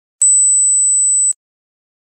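A single steady, very high-pitched electronic beep lasting about a second, starting and stopping abruptly with a click at each end.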